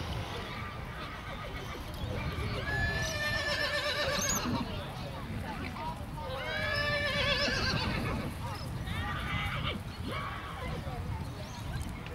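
A horse whinnying three times, each a long call of a second or two with a wavering pitch: about three seconds in, about six and a half seconds in, and about nine seconds in. A steady low rumble lies under the calls.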